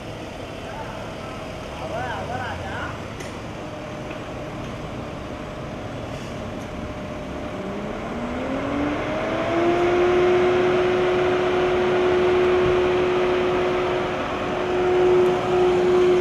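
A car starting up about halfway through: a whine rises in pitch for a couple of seconds and then holds steady over a running noise that grows louder. Before that, faint voices and a couple of light clicks.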